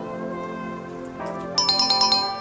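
Soft background music with sustained notes, then about one and a half seconds in a bright, ringing chime sound effect comes in, louder than the music: the quiz's answer-reveal jingle.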